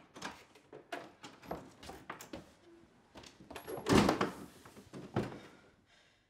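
A door being opened as someone comes into a room: a run of small clicks and knocks, with a louder thunk about four seconds in.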